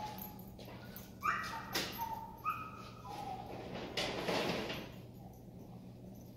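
A dog whining in about four short, high-pitched whimpers, the loudest about a second in, followed by a brief noisy patch around four seconds in.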